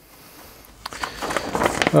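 Rustling and crinkling of paper and plastic packaging being handled, with small clicks, starting about a second in after a brief quiet.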